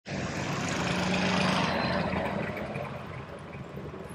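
Street traffic: a motor vehicle passes close, loudest about a second and a half in, then fades into the steady noise of engines and tyres.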